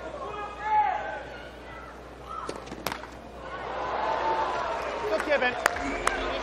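Tennis ball being struck with racquets during a point, heard as a few sharp pops, with crowd noise swelling in the second half.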